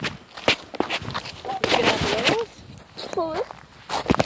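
Feet scuffing and shifting in playground wood-chip mulch, with a few sharp knocks early on. A child's short wordless vocal sounds come in around the middle and again near the end.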